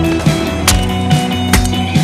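Music with a steady bass line, over which a skateboard sounds on concrete, with two sharp board impacts, one under a second in and one about a second and a half in.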